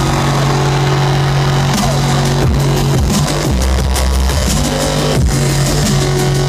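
Live electronic bass music in a dubstep style, played loud over a concert sound system and heard from within the crowd. Heavy sustained bass notes switch between pitches, with short downward dives several times.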